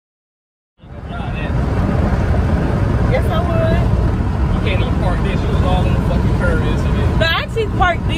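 Steady low rumble of road and engine noise inside a moving car's cabin, starting about a second in after silence, with faint voices over it.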